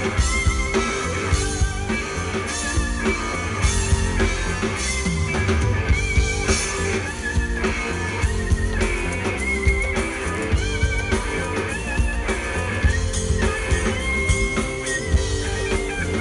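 Live rock band playing: electric guitar with short bending notes over drum kit and bass guitar, heard loud through the PA.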